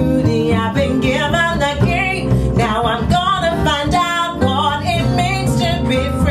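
Live soul-folk song: a female voice singing over acoustic guitar and a plucked upright double bass.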